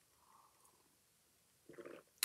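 Near silence: a person quietly sipping coffee, with a short soft gulp near the end.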